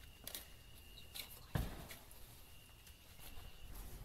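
Quiet room with a few soft clicks and knocks and one dull thump about a second and a half in, from people moving through a dark house, with a faint steady high whine underneath.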